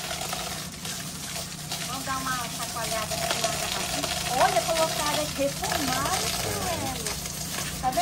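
Water pouring steadily from an outdoor stone shower spout and splashing onto a slatted wooden mat below.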